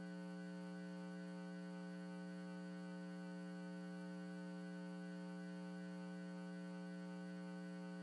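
Steady electrical mains hum, a low buzz with many overtones and no change in level or pitch.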